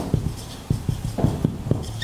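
Dry-erase marker writing on a whiteboard: a quick, irregular run of light knocks as each pen stroke meets the board.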